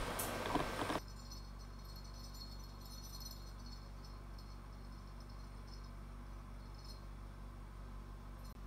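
Faint room tone: a steady low electrical hum with mains buzz, and a light high-pitched chirring above it.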